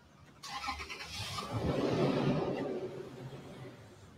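A vehicle passing by. It comes in suddenly about half a second in, is loudest around two seconds and fades away near the end.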